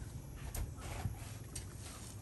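Steel trowel scraping and patting wet mortar across the back of a tile in a few short strokes about half a second apart, over a low steady hum.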